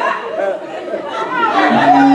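Several voices talking over one another in a large hall, with a steady low held tone coming in near the end.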